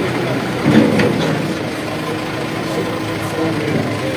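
Excavator diesel engine running steadily, with no rise or fall in pitch.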